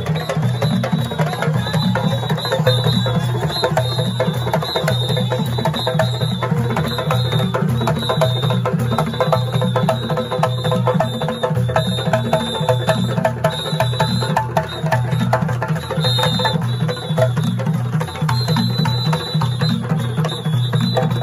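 A West African drum ensemble playing in a dense, steady, driving rhythm of many overlapping drum strokes.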